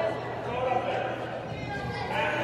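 Indistinct voices of spectators and players murmuring in a gymnasium, with no clear words or strong impacts.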